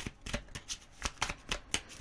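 A deck of oracle cards being shuffled by hand: a run of quick, uneven card clicks, several a second.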